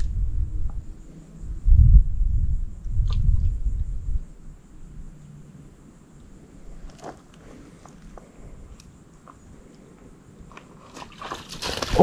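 Low, uneven rumbling on the microphone for the first four seconds, loudest about two seconds in. After it comes a quiet stretch with a few faint clicks.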